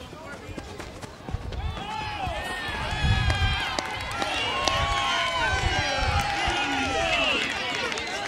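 Many people yelling and cheering over each other for a home run, swelling up about a second and a half in and staying loud.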